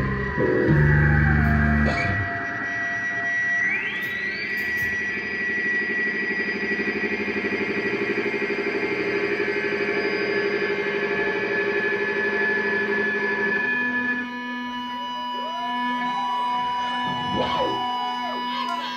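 Electric guitar fed through a pedalboard of effects, making ambient drone tones rather than a song: held notes slide down in pitch, a low note rings out and stops about two seconds in, and a tone sweeps sharply upward about four seconds in over a fast pulsing hum. Near the end the texture shifts to a steady low tone with wavering, sliding pitches.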